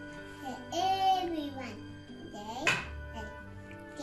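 A young girl's voice speaking a short recited line over soft background music of held notes, with a brief sharp click about two and a half seconds in.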